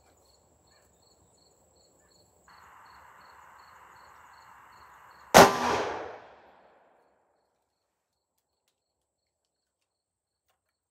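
A single .357 Magnum shot from a Rossi 2-inch snub-nose revolver, about five seconds in, sharp and loud with a short fading tail. Faint cricket chirping and a steady hiss come before it.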